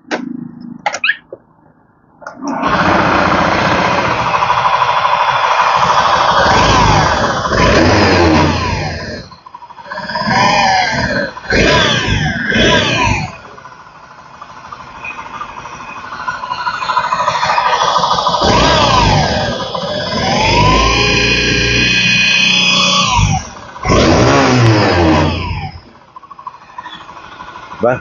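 Honda Vision 110 scooter's single-cylinder engine started with its clutch removed and revved up and down in several surges, stopping about two seconds before the end. A squealing whine is still there with the clutch off, weaker than with the clutch fitted, which the mechanic traces to the camshaft-side bearings.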